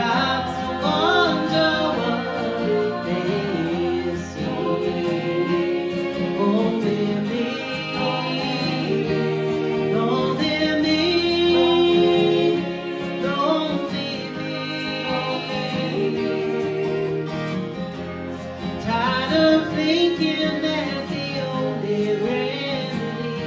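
Acoustic band playing a song: acoustic guitar with a bowed fiddle carrying the melody.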